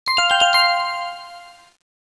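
A short, bright chime jingle: about five quick struck notes in half a second, ringing on and fading out before the two seconds are up.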